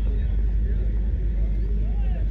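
Wind rumbling on an outdoor phone microphone, a steady low buffeting, with faint voices of people in the background.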